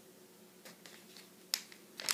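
Glossy newspaper ad flyers being handled and flipped: a few faint paper ticks, then one sharp crisp snap of paper about one and a half seconds in.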